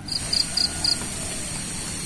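An insect chirping in grass: four short, high chirps at about four a second, over a faint steady high whine.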